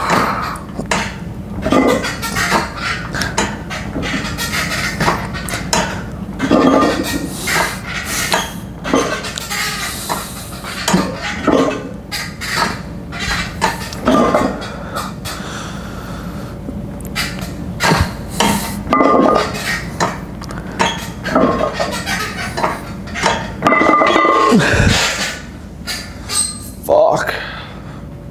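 Hard breathing in short bursts every second or two from a man straining through reps on a plate-loaded seated press machine, with clinks of the steel weight plates and lever arms. Near the end comes a louder, longer burst as the set finishes.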